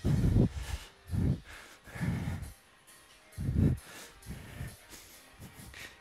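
Short breathy exhalations from a person exercising: four strong ones within the first four seconds, then fainter ones.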